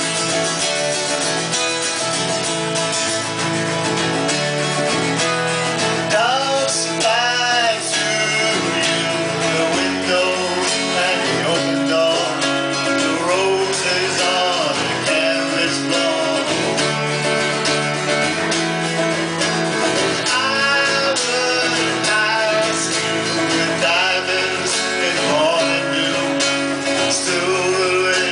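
Two acoustic guitars strumming a folk song together, with a harmonica played near the start and a man singing over the guitars from a few seconds in.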